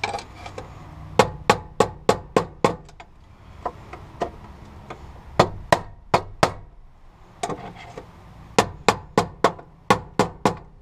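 Hammer striking the handle of a screwdriver set against the fuel pump assembly's lock ring, tapping the ring round to loosen it: three runs of sharp taps, about three a second, with pauses between.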